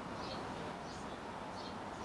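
A small bird giving short, high chirps about twice a second, over a steady background hiss.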